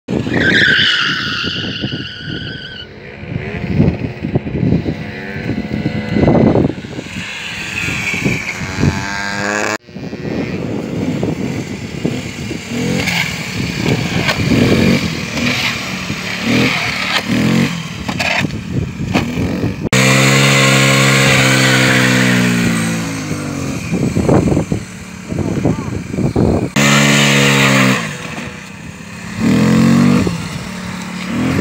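Piaggio Zip 4T scooter's small four-stroke engine revving up and down over several edited takes. There is a rising whine at the start, and a steady engine note held for a few seconds about two-thirds of the way in.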